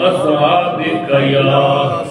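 A man's voice chanting a melodic religious recitation, with long held, wavering notes.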